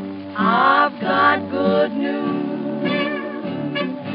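Early-1930s dance-band jazz played from a 78 rpm shellac record, with sliding melodic lines over a steady band.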